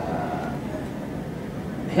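Steady background noise of a hall during a pause in speech, with a faint voice trailing off in the first half second.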